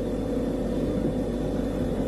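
A steady low hum with no clear events in it.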